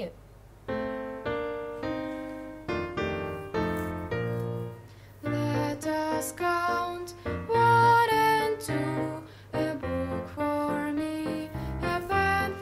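Piano music for a children's song: single notes played one after another, each dying away, then a fuller tune with a bass line from about five seconds in.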